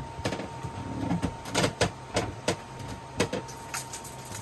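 Knocks and clatters of a settee storage locker's hatch lid being lifted off and of stored items being handled inside the locker, about half a dozen separate knocks.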